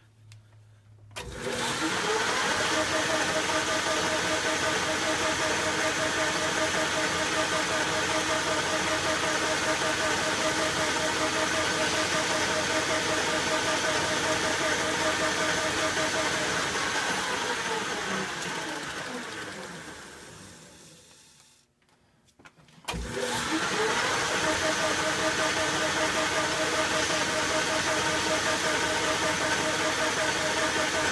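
Metal lathe starting up about a second in and running at speed with a steady motor and gear whine. About 17 seconds in it winds down to a stop, and near 23 seconds it is started again and runs steadily.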